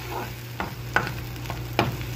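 Sliced onions frying in oil in a frying pan, sizzling while a spoon stirs them. The spoon scrapes and knocks against the pan a few times, most sharply near the end.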